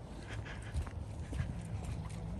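Footsteps of a person walking on a paved path, irregular steps over a steady low rumble.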